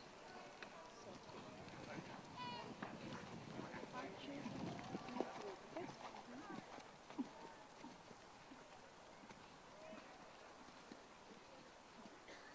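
Faint hoofbeats of a dressage horse trotting and cantering on the dirt arena footing, short soft ticks with a couple of sharper knocks about five and seven seconds in, under indistinct background voices.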